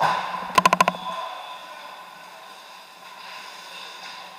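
Ice hockey play in an indoor rink: a quick rattle of about six sharp clicks about half a second in, over the rink's steady hum.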